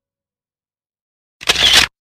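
A camera shutter sound effect: one short, loud click-and-snap burst about one and a half seconds in.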